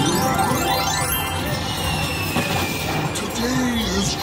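Video slot machine playing its reel-spin music and chiming effects as the reels spin, with quick rising sweeps in the first second and a long falling tone later on, over background voices.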